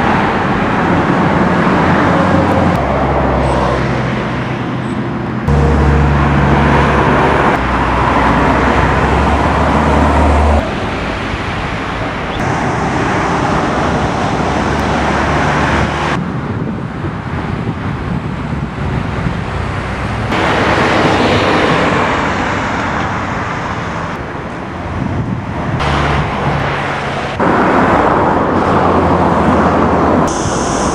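Outdoor road traffic noise, a dense steady rumble and hiss whose level and character jump abruptly several times.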